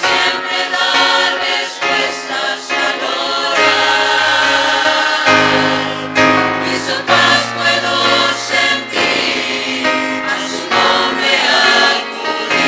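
Mixed choir of men and women singing a hymn in harmony, with long held chords through the middle.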